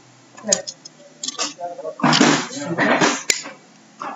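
Cardboard jigsaw puzzle pieces rattling and rustling as they are handled and shuffled on a table, in several short bursts, with a sharp click about three seconds in.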